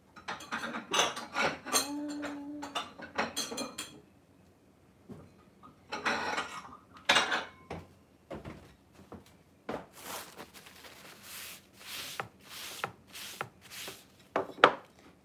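Dishes clinking and clattering as plates are handled, in several bursts of knocks with quieter pauses between them.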